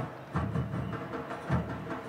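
Supporters' drums beating in the stands, a steady beat of low thumps about once a second, over general stadium crowd noise.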